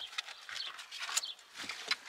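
Irregular clicks and rustling as a dog moves about on a car seat and a person settles into the driver's seat.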